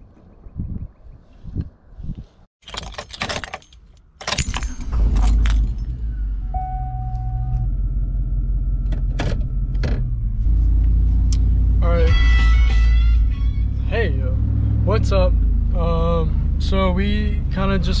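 Keys jangling, then a pickup truck's engine starting and settling into a steady idle, heard from inside the cab. A short electronic chime sounds a couple of seconds after it catches.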